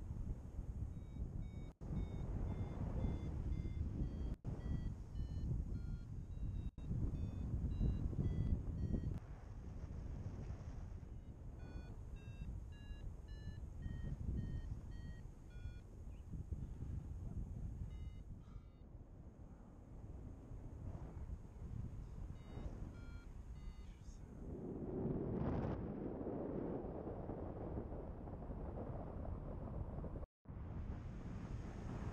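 A paragliding variometer beeping: rapid short, high beeps whose pitch steps up and down, the sign of the glider climbing in lift. The beeping is thick through the first half, then comes back in short spells. Steady wind rush on the microphone runs underneath and swells briefly near the end.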